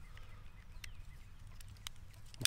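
Quiet outdoor background with faint, short bird chirps and two small sharp clicks about a second apart.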